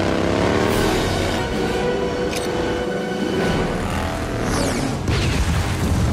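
Action film soundtrack: music mixed with a motorcycle engine and the booms of explosions.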